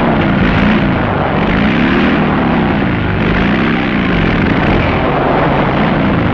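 Motorcycle engines revving over a dense, steady rush of noise, the pitch rising and falling several times.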